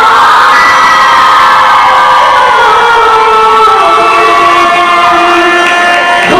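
Loud amplified folk-dance music: a voice holds one long note that slowly falls in pitch, over crowd cheering.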